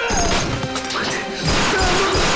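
Film fight sound effects over an action score. A man cries out as he is slammed into a wall, with crashing impacts.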